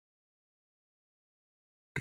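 Dead silence, a pause in a spoken recitation, until a man's voice begins the next word at the very end.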